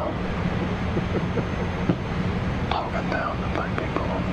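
A man speaking in a low, half-whispered voice, a remark picked up by an open studio microphone, over a steady low hum.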